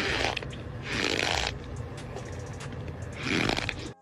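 Metal spoon scraping and pressing into packed cornstarch: a soft, crackly crunch in the ASMR manner, swelling louder about a second in and again near the end.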